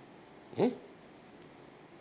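A man's single short questioning "eh?" with a rising pitch, about half a second in, amid quiet room tone.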